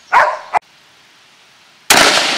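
A short loud sound and a sharp click about half a second in, then a Savage Model 10 bolt-action rifle in .223 Remington fires one shot near the end, loud and sudden.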